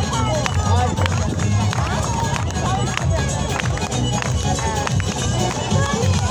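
Lezginka dance music playing with a strong, regular drum beat and a heavy bass, with people's voices over it.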